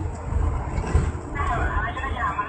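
Uneven low rumble of a vehicle driving over a rough dirt road, heard from inside the cab. About one and a half seconds in, a wavering higher sound joins it.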